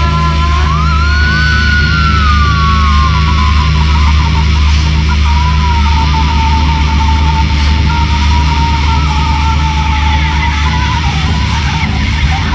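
Noisy, lo-fi black metal-punk band music: a dense, droning low end under distorted guitar noise. A high wailing line bends up and down, then holds one long note until near the end.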